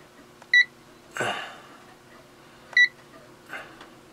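Davis Vantage Vue weather console beeping twice as its buttons are pressed, short high beeps about two seconds apart, with a short soft noise between them over a faint steady hum.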